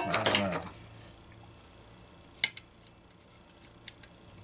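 A single sharp metallic clink of a hand tool on the workbench about two and a half seconds in, with a fainter tick just before the end, over quiet workshop background.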